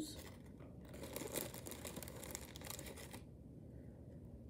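Faint crinkling of a small plastic zip-top bag of beads being handled, lasting about two seconds in the middle.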